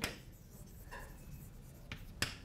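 Chalk writing on a blackboard, faint scratching strokes with a sharp tap of the chalk just before the end.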